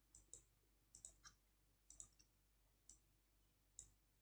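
Faint computer mouse clicks, some single and some in quick pairs, roughly one group a second, over quiet room tone.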